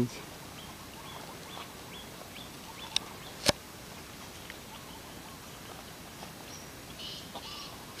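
Quiet outdoor background with faint, short, high chirps, likely distant birds. About three seconds in come two sharp clicks half a second apart, the second the louder.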